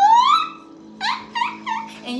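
A woman's excited vocal exclamation: a high rising 'ooh' that slides up in pitch, then three short, quick yelps. A faint steady musical drone plays underneath.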